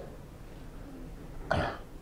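A single short cough about a second and a half in, over quiet room tone.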